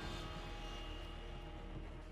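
Cinematic drone from a trailer soundtrack: a low rumble with several held tones above it, slowly fading.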